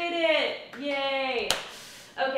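A woman's voice making two drawn-out vocal sounds that each slide down in pitch as she laughs, then a single sharp tap about one and a half seconds in.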